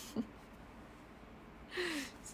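A woman's voice breaks off after a short syllable, leaving faint room tone, then she draws a quick, audible breath near the end.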